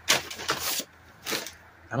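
Packaging rustling and crinkling as it is handled: a longer stretch in the first second, then a short second burst.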